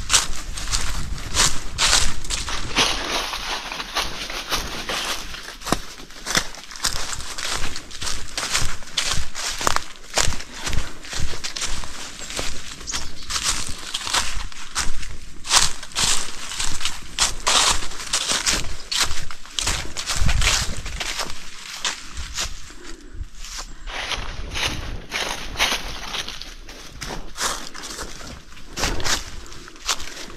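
Hikers' footsteps on a forest trail: a steady run of scuffing steps, about two a second.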